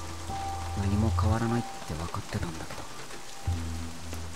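Steady rain falling under soft background music with long held tones, with a short stretch of a character's voice about a second in.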